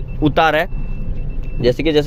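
A man talking inside a car's cabin. In the pause between his words, the steady low engine and road rumble of the Renault Kiger's three-cylinder engine is heard, with a faint steady high whine.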